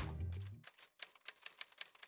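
Typewriter key-click sound effect, a quick even run of about six clicks a second, typing out a title card letter by letter. Background music fades out during the first half second, before the clicks begin.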